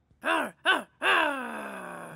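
A cartoon character's voice growling a pirate 'arr': two short 'arr's, then one long 'arr' that falls in pitch.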